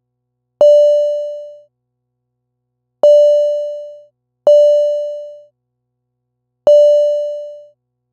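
Reaktor Blocks modular synth patch sounding four separate notes at the same pitch. Each starts with a click and fades away over about a second, at uneven intervals.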